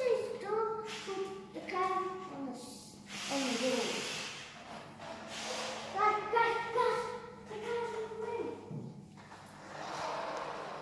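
Children's voices talking and calling out in high-pitched tones, with a short burst of hissing noise about three seconds in.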